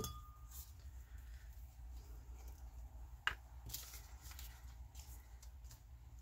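Hands handling paper, wax paper and craft tools on a cutting mat: faint rustles and light taps, with one sharp click a little over three seconds in.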